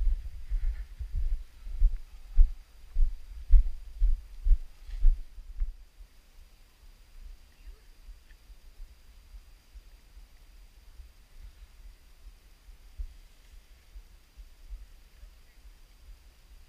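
Footfalls of a runner on a dirt trail, heard as low thuds through the body-worn camera at about two a second, stopping about six seconds in; after that only a faint outdoor background.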